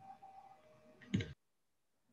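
Near silence on a video-call line: a faint steady tone, one short sound about a second in, then the audio cuts to dead silence.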